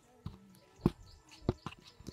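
A plastic plate being waved to fan a smoky wood cooking fire, giving a few separate soft thumps and knocks, about four in two seconds.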